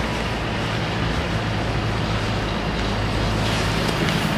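Steady road traffic noise from a city street, with a low, even engine hum underneath.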